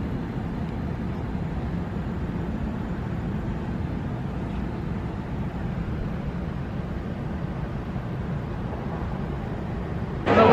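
Steady outdoor city background noise: an even low rumble with no distinct events.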